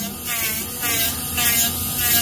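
Small pen-sized electric nail drill running, its bit filing a press-on nail on a practice finger, with a whine that wavers up and down in pitch.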